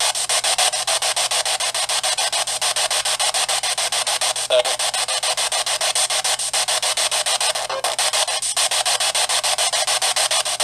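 Radio static from a spirit box, played through a small handheld speaker, chopped into rapid, even pulses as it sweeps through stations.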